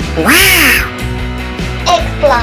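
Upbeat background music with one loud cartoon-style sound effect a quarter second in, its pitch rising and then falling over about half a second; a short chirping effect comes near the end.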